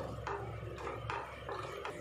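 Wooden spatula stirring chopped vegetables and water in a steel pot: about five short scraping swishes, over a low steady hum.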